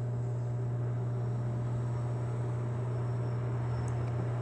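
Aquarium pump humming steadily at one low, even pitch, with a faint hiss above it.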